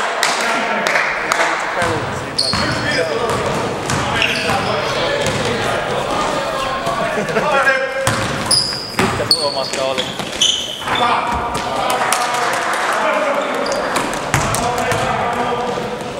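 Basketball being dribbled and bounced on a sports-hall floor, with repeated knocks and short high shoe squeaks, echoing in a large hall. Players' voices call out over the play.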